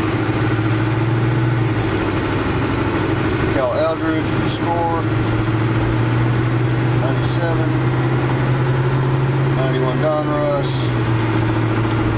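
Car engine running steadily, heard from inside the cabin as a low hum. The hum steps up in pitch about two seconds in and drops back near the end.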